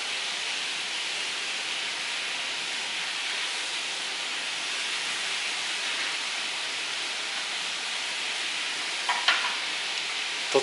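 Steady, even hiss throughout, with no distinct card snaps or taps standing out above it; a brief voice-like sound shortly before the end.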